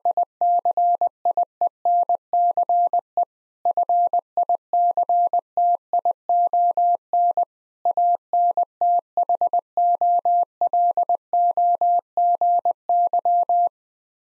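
Morse code sent at 20 words per minute as a single steady mid-pitched tone keyed in dots and dashes, spelling "science fiction anthology": three word groups with two short pauses between them, the last group the longest.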